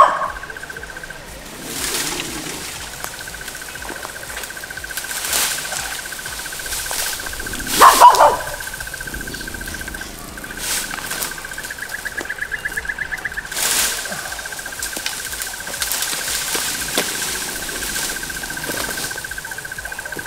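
Climbing vines being pulled by hand off a large tree trunk: rustling leaves and crackling, snapping stems, with a loud burst about eight seconds in. A steady high pulsing buzz runs underneath.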